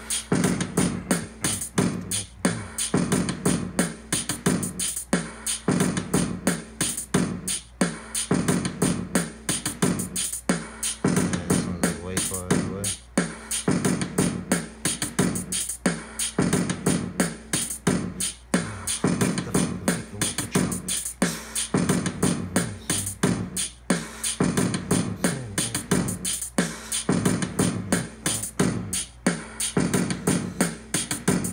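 Hip-hop beat from an Akai MPC Live's stock drum kit samples: drum hits in a steady, repeating pattern throughout.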